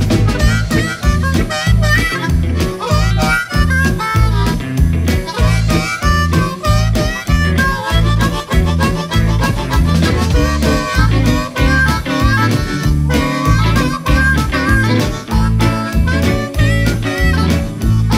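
Blues band instrumental break: a harmonica takes the lead melody over electric guitar, bass and drums keeping a steady beat.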